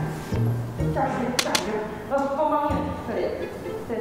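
Background music with a steady low beat and a melody, with a voice heard at times. Two sharp clicks come close together about a second and a half in.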